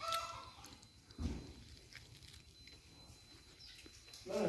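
A brief faint chicken call at the start, then a soft low thump about a second in, over quiet room tone.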